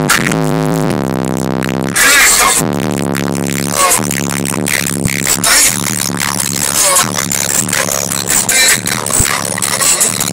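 Loud music with a heavy bass line of long held low notes, played through a car audio system with four large subwoofers.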